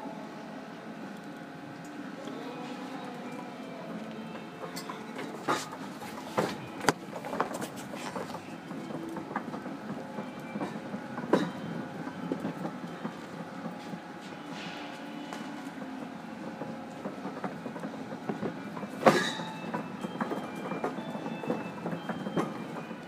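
Shopping trolley rolling over a concrete warehouse floor: a steady rattle and rumble, with a few sharp knocks, the loudest near the end.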